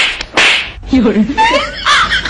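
Two loud hand slaps on the back of a boy's neck, close together at the start, followed by boys laughing and talking.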